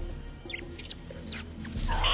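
Three brief high chirps from caged Compsognathus (compies), a film creature sound effect, over a low music bed.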